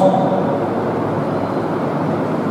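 Steady, even background noise, a constant rushing hiss with no distinct strokes or tones.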